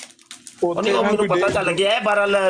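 A voice making a long, drawn-out vocal sound that starts about half a second in, with a faint steady hum before it.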